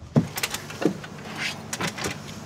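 Clunks and clicks from a wheelchair-accessible taxi's door and wheelchair ramp: four or five sharp knocks spread over a couple of seconds, over a low steady hum.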